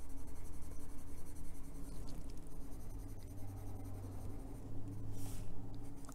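Coloured pencil scratching lightly on paper in short strokes as white is worked into a drawing, with a slightly stronger stroke a little after five seconds in. A steady low hum runs underneath.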